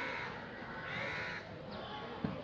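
A bird calling twice outdoors, each call about half a second long, the second starting just under a second in.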